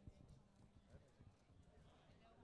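Near silence: faint outdoor background with scattered soft, irregular low knocks and a weak murmur of distant voices.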